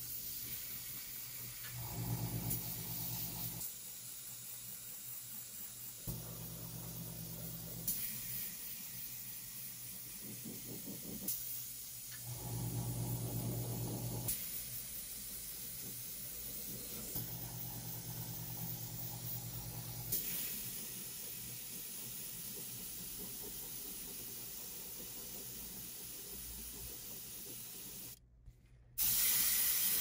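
Airbrush spraying pink paint onto sneaker leather: a steady hiss of compressed air, broken once briefly near the end. A low hum comes and goes underneath several times.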